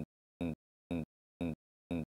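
A short, identical burst of sound repeating about twice a second, with dead silence between: a looping glitch in the recording rather than a real sound.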